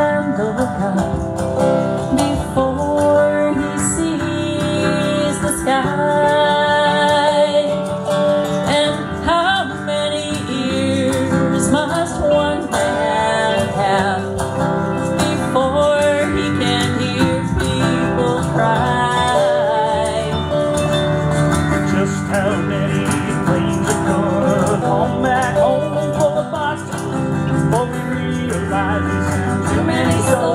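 Electric lead guitar playing an instrumental break with bent notes over a strummed acoustic guitar.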